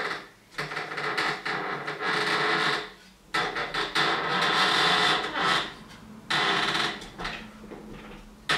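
Large hand-turned wooden wheel with knife-tipped spokes rubbing on its axle as it turns, a steady rasping grind in three spells of one to three seconds each with short pauses between.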